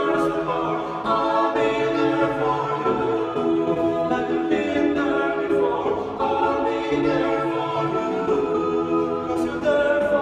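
Male a cappella vocal quartet singing in close four-part harmony, with no instruments.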